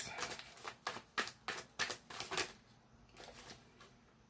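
A tarot deck being shuffled by hand: a quick run of crisp card clicks and snaps that stops about two and a half seconds in.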